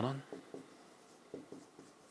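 Marker writing on a board: a few short, faint strokes.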